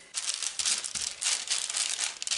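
Baking parchment crinkling and rustling as it is handled and pressed down over dough with the hands: a dense crackly rustle.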